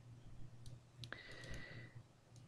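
Faint computer mouse clicks, a few single clicks, with a faint steady high tone starting about halfway through.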